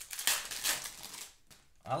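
A foil trading-card pack (2021 Panini Prizm Draft Picks football) being torn open by hand. The wrapper crinkles and crackles for about a second and a half.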